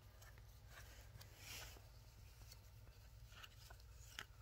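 Near silence, with faint light ticks and a soft rustle of cardboard game cards being handled and laid on carpet.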